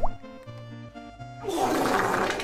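Background music with soft held notes, then, about one and a half seconds in, a loud rushing, bubbling water-like noise sets in.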